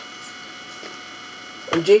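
Steady electrical hum with a faint high whine in the room, nothing else standing out, until a woman's voice begins near the end.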